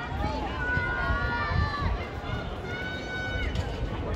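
Voices of spectators calling out in the open air, some drawn out like shouts, over a steady low rumble.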